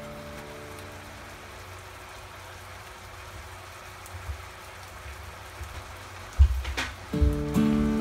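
A soft, steady sizzle of chicken and mushrooms simmering in butter sauce in a frying pan, under a strummed guitar music track that fades out at the start. Near the end a thump and a short falling swish come just before the music starts again.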